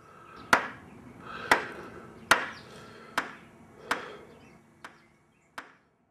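A series of seven sharp hits, about one a second, the last ones fainter.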